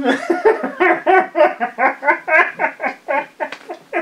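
A woman laughing hard, a long run of quick, even laugh pulses that breaks off at the end.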